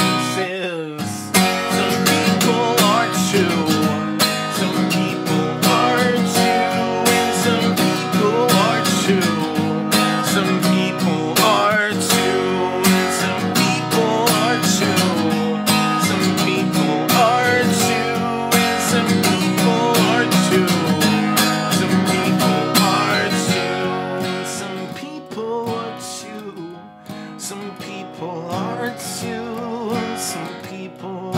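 Acoustic guitar strummed hard and fast in an instrumental break, easing to quieter playing for a few seconds near the end.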